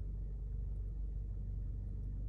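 Steady low rumble inside a car's cabin with the car running, with no other events.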